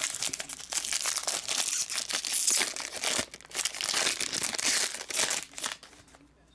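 Foil wrapper of a trading-card pack being torn open and crinkled in the hands, a dense, uneven crackle that stops shortly before the end.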